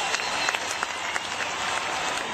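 Large concert crowd applauding after the song has ended: dense, steady clapping with scattered shouts mixed in.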